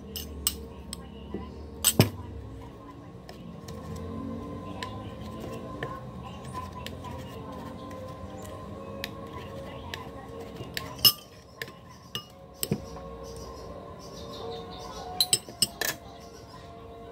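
Metal spoon and fork clinking and scraping against a ceramic plate of rice. There are sharp clinks about two seconds in and again around eleven seconds, with a quick cluster near the end.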